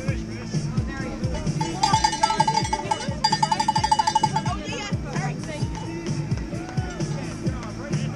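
A cowbell shaken rapidly for about three seconds, starting a second and a half in, its clanks coming about ten a second near the end. Background music and crowd voices run underneath.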